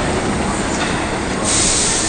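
Kita-Osaka Kyuko 8000-series subway train standing at the platform with its doors open, a steady running noise. About one and a half seconds in, a loud hiss of air starts and holds.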